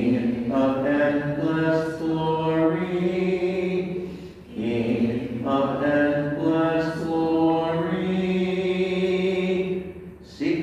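A man singing the Lenten Gospel acclamation as a slow chant, in two long phrases of held notes with a short break about four seconds in.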